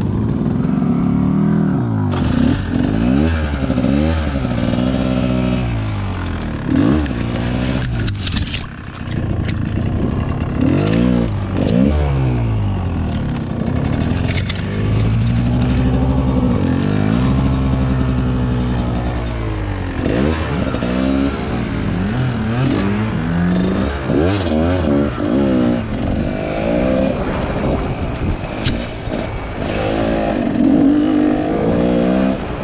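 Dirt bike engine revved up and down over and over in short bursts of throttle as the bike is worked slowly through tight, brushy trail. Scattered knocks and clatter come in over the engine.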